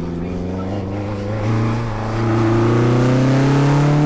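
Atalanta sports car accelerating past, its engine note rising steadily in pitch and growing louder about two seconds in as it comes by.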